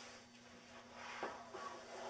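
Handling and rustling of a scrapbook's plastic-sleeved photo pages on a table, with a sharp click about a second in.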